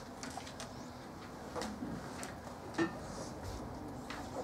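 Marker drawing lines on a whiteboard: a few short, faint strokes over a steady room hum.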